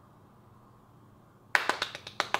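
Near silence for about a second and a half, then a quick run of one person's hand claps, several to the half-second.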